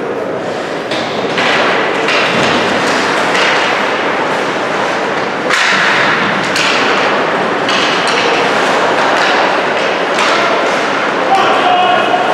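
Ice hockey play in an echoing rink: skates scraping the ice, sticks clacking, and several sharp knocks and thuds of players and puck against the boards, over shouting voices.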